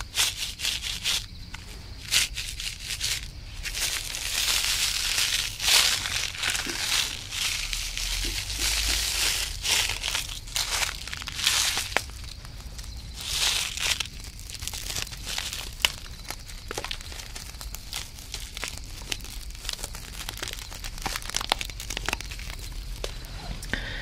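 Crinkling of a Pop Rocks candy packet handled and rubbed between the fingers close to the microphone, in irregular crackly swells with small clicks.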